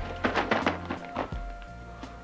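Newspaper rustling and a few soft thuds over background music, mostly in the first second and a half.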